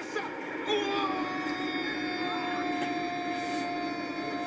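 A TV football commentator's long goal cry from the match broadcast playing in the room: a single note held for about three seconds, starting about a second in, over the broadcast's background noise.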